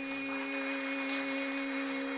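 A steady accompanying drone holding a single note with its overtones, left sustaining alone after the closing drum stroke of a Carnatic-style performance.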